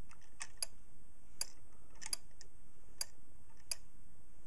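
Hipp toggle on a pendulum clicking lightly as its tip rides over the peaks of the notched brass dog with each swing: sharp little ticks, about two or three a second, unevenly spaced and some in close pairs. With the pendulum swinging well, the toggle is clearing the dog without being caught, so the drive switch is not being pushed.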